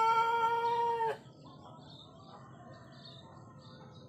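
The long, held final note of a rooster's crow, which cuts off abruptly about a second in. Afterwards, faint chirping of small birds repeats in the background.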